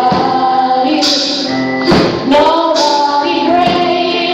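Live gospel praise-and-worship singing: voices holding long, gliding sung notes over music, with a sharp percussive hit about two seconds in.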